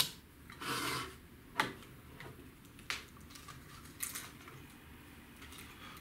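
Handling sounds on a tabletop: a short rustle, then two sharp clicks and another rustle, as a small digital scale is set up and a bolognese fishing rod is laid across it for weighing.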